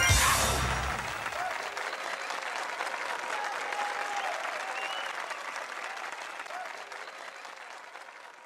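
The song ends with a final chord that stops about a second in, then an audience applauds and cheers, with a few voices calling out over it, fading away toward the end.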